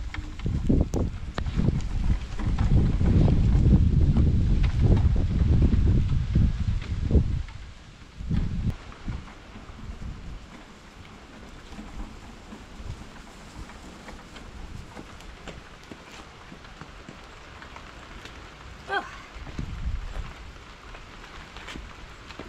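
Low rumbling noise on the microphone for about the first seven seconds, then steady light rain, with scattered drops ticking on the camera.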